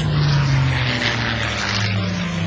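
Propeller-driven piston-engine fighter plane flying past, its engine drone loudest about half a second in and dropping in pitch as it passes.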